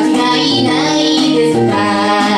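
A woman singing live into a microphone in a high, light voice, with instrumental accompaniment.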